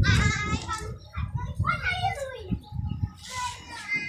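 Children's voices talking and calling out close to the microphone, the words not clear, over a low rumble on the microphone.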